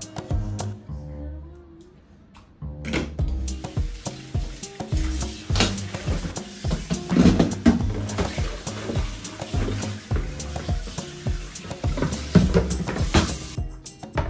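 Background music plays throughout. From about three seconds in, a kitchen tap runs into a stainless-steel sink, with plastic bowls and a colander knocking against it. The water cuts off just before the end.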